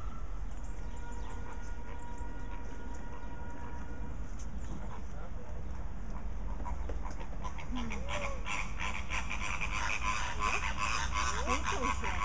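A flock of flamingos honking and gabbling in goose-like calls, the clamour thickening and growing louder from about seven seconds in. A steady low rumble runs underneath.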